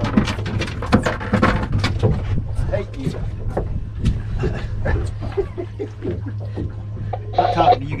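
Boat outboard motor running with a steady low hum, under irregular knocks and clatter on deck. A voice speaks near the end.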